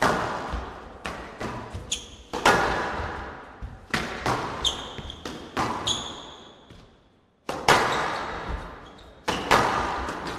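Squash ball being struck back and forth in a rally, sharp cracks of racket and ball off the walls every second or two, each ringing on in the hall. Short high squeaks of court shoes on the floor cut in between the shots.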